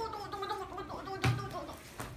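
A young woman's strained, wavering vocal sound while she is held in a headlock, then one heavy thud about a second and a quarter in as the two fall onto the wooden floor.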